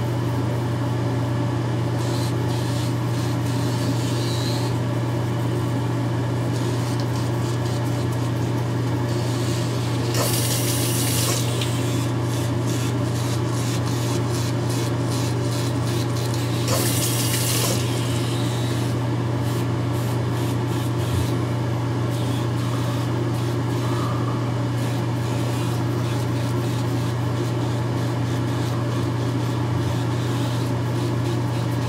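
Gillette Fusion5 Power razor's battery-driven vibration motor humming steadily while the five blades scrape across stubble, shaving against the grain. Twice around the middle, a short burst of running hot tap water as the razor is rinsed.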